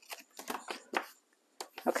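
Scissors snipping through a strip of designer paper: a few light, short snips and rustles in the first second, then a couple more paper-handling clicks near the end.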